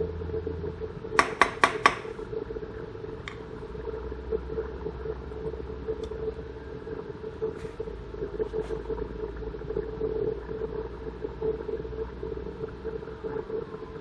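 Steady low machine hum, with a quick run of four light knocks about a second in and a few faint single taps later as the HDPE plastic mallet is handled.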